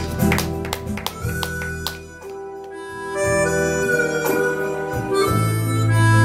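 Live keyboard accompaniment in an instrumental break of a slow ballad: a few short struck notes in the first two seconds, then a slow melody of long held notes over sustained bass notes.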